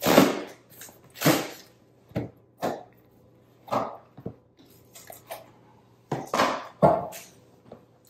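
Cardboard shipping box being cut open and handled: a run of short scraping and rustling sounds as the tape is slit and the boxed HomePod mini is slid out of the cardboard, the loudest at the very start and again near the end.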